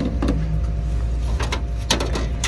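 A steady low rumble of background noise with a few light clicks and knocks of hard plastic food containers and baskets being put back and picked up on a store shelf, once early and a few times in the second half.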